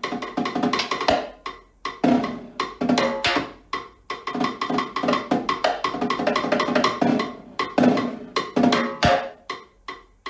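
Solo snare drum played with sticks: a dense run of quick strokes and accented hits, some with a dry, woody click.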